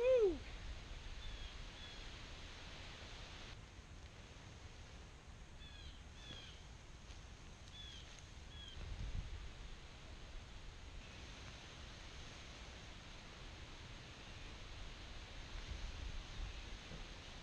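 Faint, scattered short chirps of small birds over a quiet outdoor background, with a brief, loud, voice-like call right at the start.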